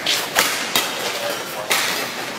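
Badminton rackets striking the shuttlecock in a fast doubles rally: a quick run of sharp cracks in the first second, then a louder one near the end.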